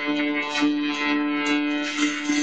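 Guitar-led rock music: a held chord rings steadily, with a few short, lighter accents over it.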